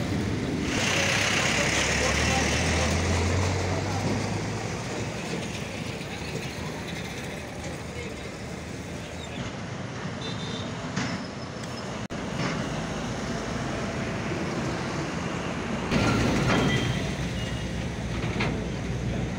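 Roadside traffic noise: vehicle engines running and passing, with indistinct voices. It grows louder near the end.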